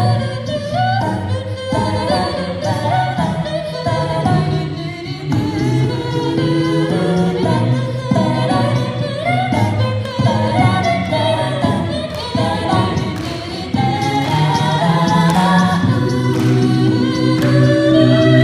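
Six-voice a cappella group singing a pop song live through microphones and a PA: lead and harmony voices over a low sung bass line, with vocal percussion keeping a steady beat.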